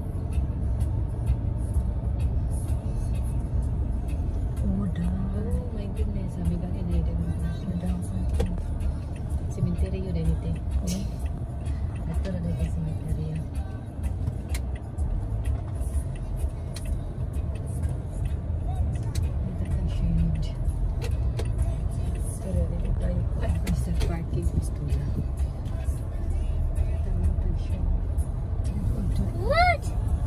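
Car cabin noise while driving slowly: a steady low rumble of tyres and engine heard from inside the car, with faint voices or music underneath.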